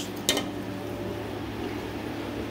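Steady low mechanical hum in the room, with one short knock about a third of a second in.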